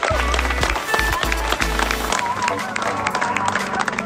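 Background music with a heavy bass beat, with voices underneath; the bass drops out about two seconds in.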